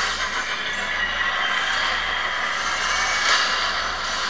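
Movie trailer soundtrack: a steady rushing noise with no beat and no voice.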